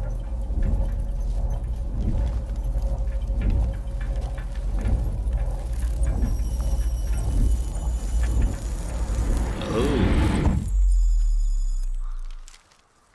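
Film soundtrack: a deep, steady low rumble under music, with faint voice-like sounds. Near the end it swells into a louder low drone that cuts off suddenly.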